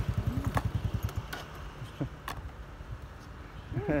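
A low, fast-pulsing engine rumble, like a small motor vehicle running nearby, fading away over the first two seconds. A few sharp clicks sound over it.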